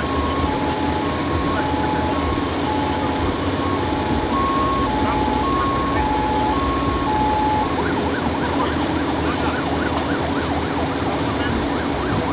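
Two-tone emergency-vehicle siren alternating between a high and a low note, each about half a second long. It stops about two-thirds of the way through. Underneath, the steady hum of idling engines continues.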